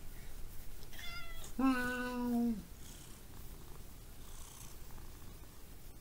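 Domestic cat purring close to the microphone as a low, steady rumble. About a second in comes a short, falling meow, followed at once by a held, lower-pitched hum lasting about a second.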